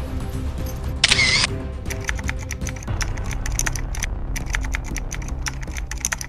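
Editing sound effects over background music: a camera-shutter burst about a second in, then a run of quick typing clicks while a character caption appears on screen.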